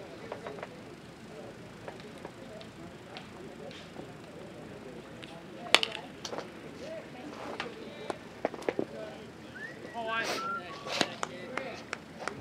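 A single sharp crack as a batter swings at a baseball pitch, the loudest sound, about halfway through. A few fainter clicks follow, and voices call out near the end.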